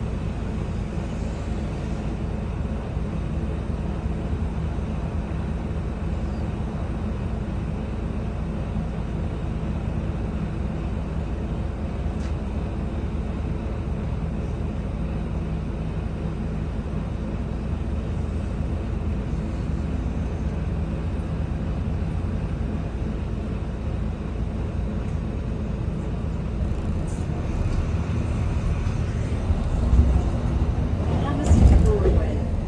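Volvo B9TL double-decker bus's six-cylinder diesel engine idling steadily while standing, heard inside the upper deck. It gets a little louder over the last few seconds.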